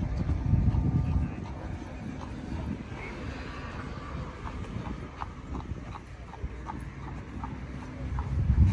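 A low rumble of wind on the microphone for the first second. Then a steady run of sharp clip-clop steps on pavement, about two to three a second, through the second half.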